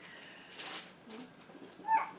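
A cat giving one brief, high meow near the end, over faint room sounds.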